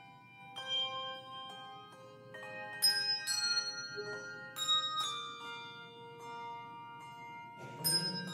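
Handbell choir playing: struck bells ring out in long overlapping tones, several notes at a time. Louder chords are struck about three and five seconds in and again near the end.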